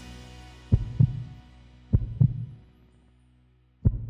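Three double thumps like a slow heartbeat, a heartbeat sound effect, sounding under the fading tail of a music bed.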